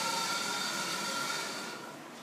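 Print-head carriage of a Mimaki JV33 inkjet printer being pushed by hand along its rail, a steady sliding hiss that fades out near the end.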